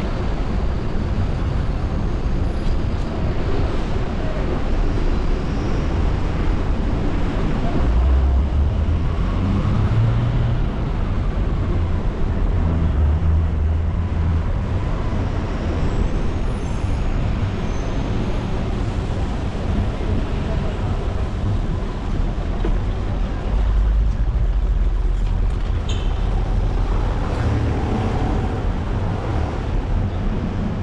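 Steady city street ambience: road traffic noise with a heavy low rumble, heard from a moving bicycle.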